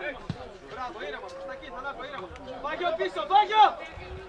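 Several voices calling out and shouting during a football match, with the loudest shout about three and a half seconds in.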